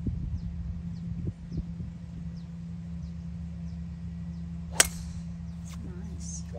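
Golf driver striking a teed-up ball on a tee shot: one sharp, loud crack about five seconds in. Faint high chirps repeat in the background about every two-thirds of a second.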